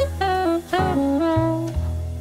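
Smooth jazz instrumental: a saxophone plays a melody of short notes that slide into pitch, over a steady bass line.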